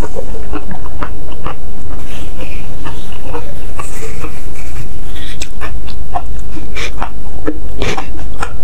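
Close-miked eating sounds: wet chewing, lip smacks and mouth clicks from eating spicy meatball soup with noodles, with breathy sniffs from the chili heat. About halfway through comes a softer rustle as a tissue dabs the mouth. A steady low hum from the recording runs underneath.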